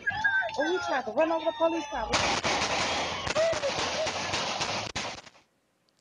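Shouting voices, then about two seconds in a rapid volley of many gunshots lasting about three seconds. The shots are heard through a home surveillance camera's microphone, and the sound cuts off abruptly near the end.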